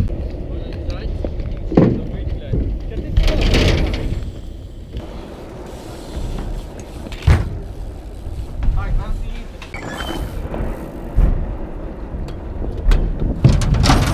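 BMX bikes riding on skatepark ramps: tyres rolling over the boards, with several sharp knocks of wheels landing on or hitting the ramps, over a low rumble and faint distant voices.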